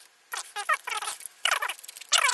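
Scissors cutting through a stiff plastic blister pack: three short squeaky, crunching cuts as the blades bite the plastic.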